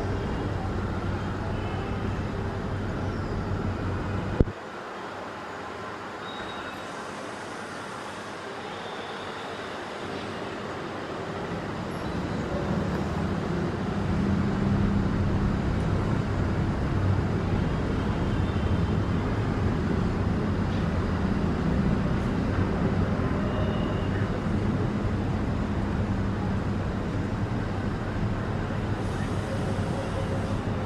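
Steady background rumble of road traffic. A sharp click comes about four seconds in, after which the deep part of the rumble drops away, then builds back up and holds fuller and louder through the rest.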